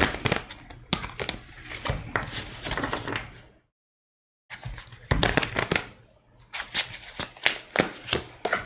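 A deck of tarot cards being shuffled by hand: a rapid run of papery clicks and slaps as the cards are worked. It stops dead for under a second midway, then goes on.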